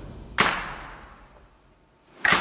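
A single sharp hit about half a second in, dying away over about a second.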